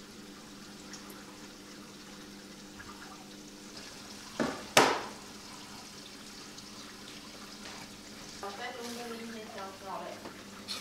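Steady low hum with a light trickle of water, typical of an aquarium sump filter's pump running. Two sharp knocks come about four and a half seconds in, and a voice near the end.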